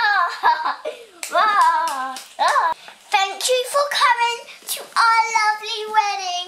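A young child's high voice vocalizing without words, with bending, sung-sounding notes that become longer held notes in the second half, mixed with a few claps.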